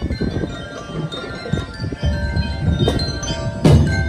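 Drum and lyre corps playing: metal bell lyres ring out a melody over a steady drum beat, with a loud drum hit near the end.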